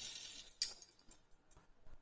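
A single sharp click about half a second in, then a few very faint ticks.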